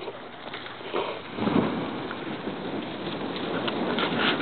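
Large brush fire burning, a steady crackling, rushing noise that swells about a second and a half in as the flames take hold.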